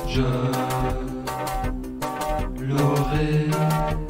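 French chanson song with a band: a male singer holds one long sung note over the accompaniment, with a steady drum beat.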